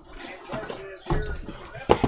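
Cardboard card boxes handled as one is drawn out of a stack: light scraping and rustling, then one sharp knock just before the end.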